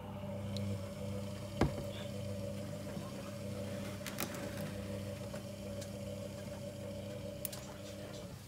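Logik L712WM13 washing machine running with a steady motor hum, with one sharp knock about one and a half seconds in.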